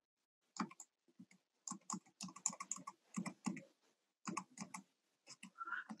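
Faint computer keyboard keys tapped in quick, irregular strokes, paging through presentation slides.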